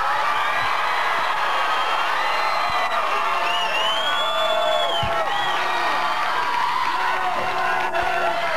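Studio crowd of young fans cheering and clapping, with many high whoops and screams rising and falling over the applause.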